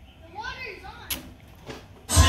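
A faint, brief voice in the first half, then a sharp click about halfway through and a softer click near the end.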